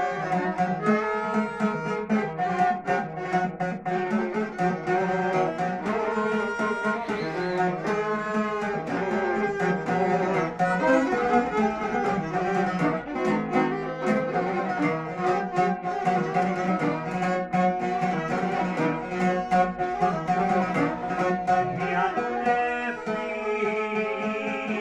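Live folk music played on two violins and a long-necked plucked lute, a šargija: the fiddles bow the melody over the lute's steady plucked rhythm.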